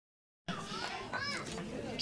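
High-pitched children's voices calling out among a gathered crowd, starting about half a second in after silence.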